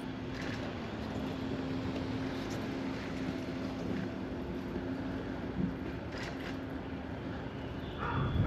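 Steady riding noise from a bicycle-mounted camera rolling along a paved street: tyre and wind noise, with a steady low hum through most of it and a brief knock about five and a half seconds in.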